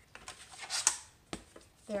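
A sheet of thick black board scraping free of a rotary paper trimmer after a cut that took several passes, a brief dry rasp about a second in, then a sharp click.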